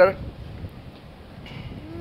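A man's spoken word ends right at the start, followed by low, steady outdoor background noise with no distinct event.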